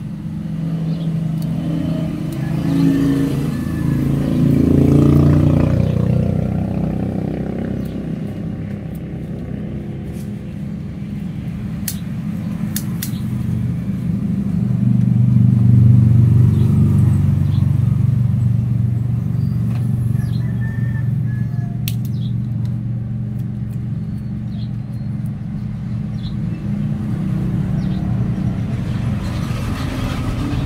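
Low rumble of motor vehicle engines passing nearby, swelling twice as vehicles go by, with a few sharp clicks of florist's scissors snipping.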